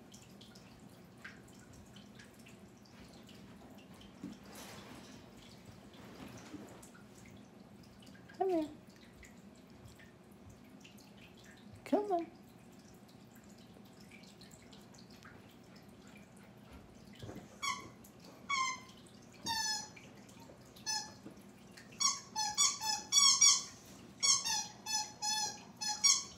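A West Highland white terrier chewing a rubber balloon-dog squeaky toy, making rapid runs of high, balloon-like squeaks that start about two-thirds of the way in and grow denser and louder toward the end. Two short falling squeals come earlier.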